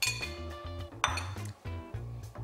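Two sharp clinks of glass tableware, one at the start and another about a second in, each ringing briefly, over background music with a steady beat.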